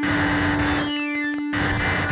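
iPad synthesizer played from a small MIDI keyboard through fuzz and effects pedals into a bass speaker cabinet: a held drone note under repeating bursts of harsh distorted noise, worked with resonant filter sweeps.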